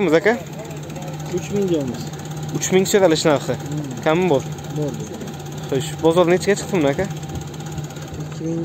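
A Daewoo Matiz's small petrol engine idling steadily with the bonnet open, a constant low hum under people talking.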